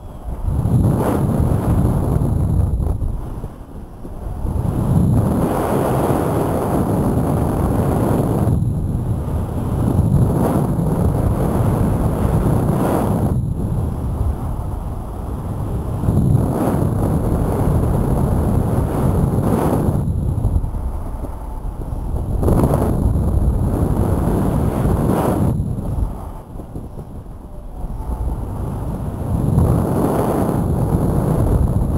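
Wind buffeting a camera microphone: a loud, low, rushing rumble that comes in gusts, with several brief lulls.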